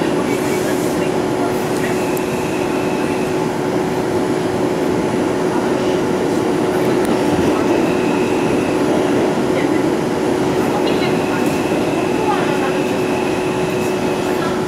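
Inside an R142 subway car running through a tunnel: the steady loud rumble of wheels on rail with a constant low hum. A thin high tone comes and goes three times.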